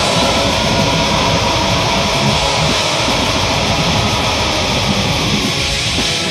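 Death/doom metal song with a dense, loud wall of heavily distorted electric guitar.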